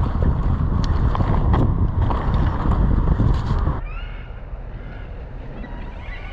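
Riding a Norco Sight A3 mountain bike over a dirt track: wind buffets the microphone over tyre rumble and sharp rattles and knocks from the bike. About two-thirds of the way through it drops suddenly to quieter outdoor ambience with birds chirping.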